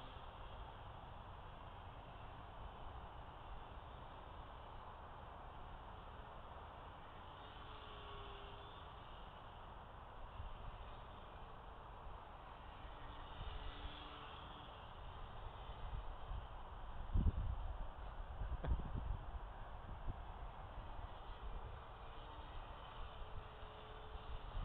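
Faint, steady outdoor hiss with the thin drone of a distant RC airplane's motor and propeller fading in and out. Two low rumbles hit the microphone about two-thirds of the way through.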